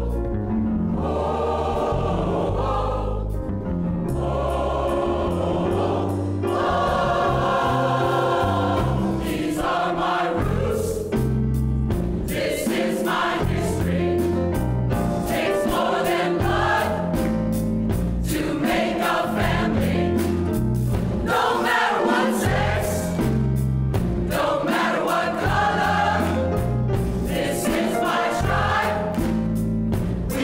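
A large mixed-voice choir singing in harmony, with men's and women's voices together, holding long notes that change every few seconds.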